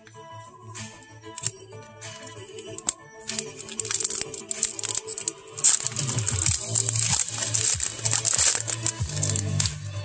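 Foil trading-card booster pack wrapper crinkling and being torn open by hand, a dense crackle loudest from about four seconds in until near the end. Background music plays throughout.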